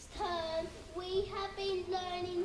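Young boys singing in held notes that step up and down in pitch.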